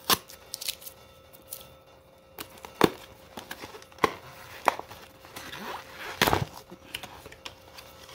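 Sealed cardboard box of card packs being pried open by gloved hands: plastic wrap peeling and glued flaps tearing loose in a series of sharp snaps and cracks, the loudest about three seconds in.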